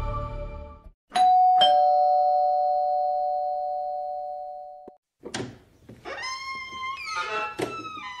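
Electric doorbell giving a two-tone ding-dong: two strikes about half a second apart, their chimes ringing and slowly dying away over about three seconds. A few faint gliding squeaks follow near the end.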